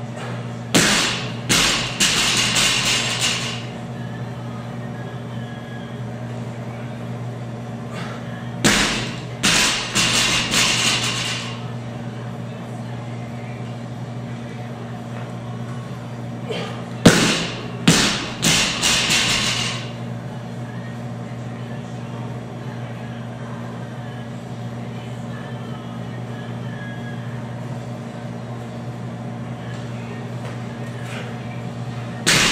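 A loaded 135 lb barbell dropped from overhead onto the gym floor three times, about eight seconds apart; each drop is a heavy thud followed by a few quick bounces and a rattle of the plates. A steady low hum runs underneath.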